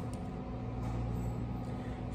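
A steady low background hum with no clear events.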